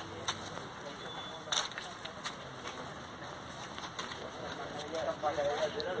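Faint murmur of voices over a steady outdoor background hiss, broken by a few short sharp clicks.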